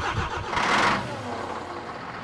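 Scania milk truck's diesel engine running, with a louder rushing burst about half a second to a second in, then settling to a steady run.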